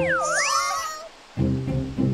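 Background cartoon music is broken by a short, high animal-call sound effect that swoops down in pitch and back up. After a brief pause, the music starts again.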